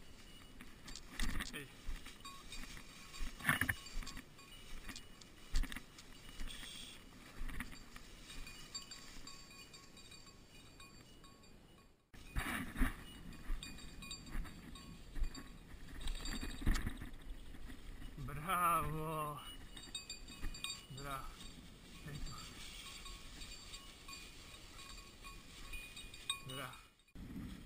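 Footsteps and rustling through tall dry grass and brush, with scattered light clinks and knocks. About two-thirds of the way through, a short wavering voice-like sound is heard.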